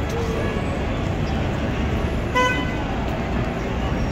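Busy city-square traffic and crowd noise, with a single short vehicle-horn toot a little past halfway through.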